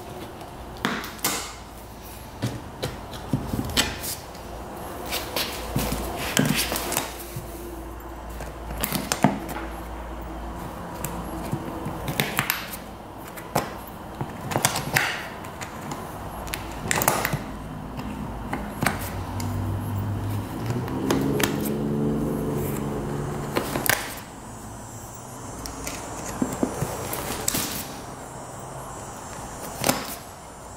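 Staples being pried and pulled out of an ATV seat's plastic base with pliers: irregular sharp metal clicks and snaps, some seconds apart, some in quick runs. A low hum sits underneath and swells for a few seconds in the middle.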